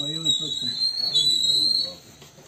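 Men's voices talking, with a steady high-pitched whistle-like tone running alongside that stops shortly before the end.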